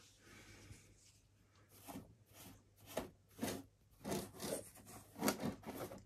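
Paint brush scrubbing WD-40 over a muddy plastic RC car body shell: a run of short, faint brushing strokes starting about two seconds in.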